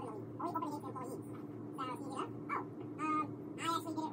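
Indistinct voices in the background, in short broken phrases, over a steady low hum.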